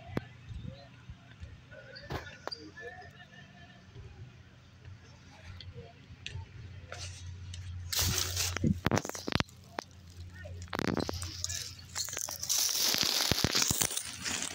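Dry grass and dead leaves rustling and crackling as a hand rummages through them close to the microphone, quiet at first and then in loud bouts from about eight seconds in.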